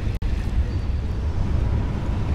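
Steady low rumble of strong wind buffeting the microphone over choppy water, broken by a momentary dropout just after the start.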